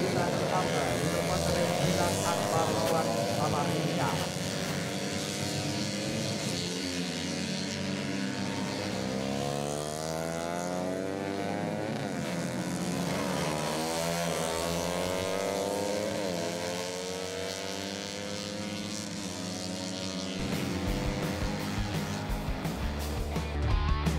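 Several four-stroke 130 cc underbone racing motorcycles at full throttle, their engine notes overlapping at different pitches and rising and falling repeatedly as the riders accelerate, shift and brake for corners.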